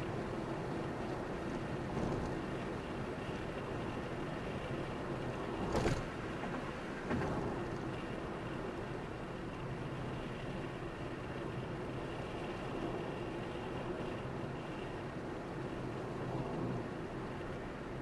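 Car driving at road speed: steady tyre and engine noise, with two brief louder thumps about six and seven seconds in.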